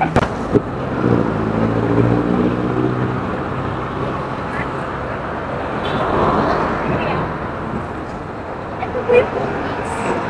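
Motorcycle engine running with a steady, even hum over the first few seconds, then road and traffic noise as it rides through city traffic, swelling about six seconds in.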